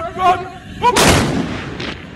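A volley of black-powder muskets (moukhalas) fired together by a line of tbourida horsemen: one loud blast about a second in, trailing off over most of a second.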